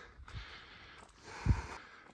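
Quiet, heavy breathing of a walker out of breath from climbing uphill, with a low thump about a second and a half in, like a footstep or a bump on the handheld camera.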